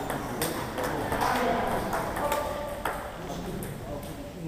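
Table tennis balls clicking off bats and tables at irregular intervals as rallies go on at several tables, over people talking.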